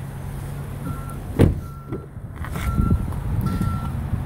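A vehicle's electronic warning beep, a flat high tone like a reversing alarm, sounds four times at a little under a second apart. A single sharp knock comes about a second and a half in, over a low steady hum.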